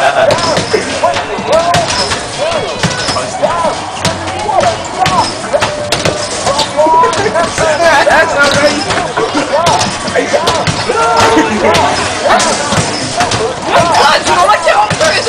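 Arcade basketball shooting machines in play: a rapid, continuous run of basketballs thudding against the backboards and rims, under background voices.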